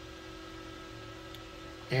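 Faint steady hum with a few thin steady tones under it, unchanging throughout: background room tone.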